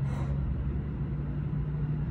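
A steady low hum with a constant rumble beneath it, and a short hiss right at the start.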